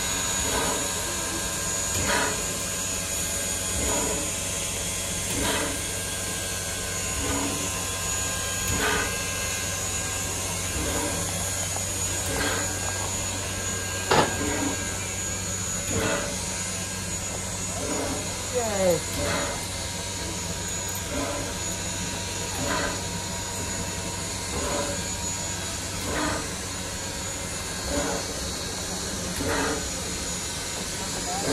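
Steam locomotive Sierra Railway No. 3, a 4-6-0 ten-wheeler, standing under steam: a steady hiss with a soft regular beat about every second and a half to two seconds.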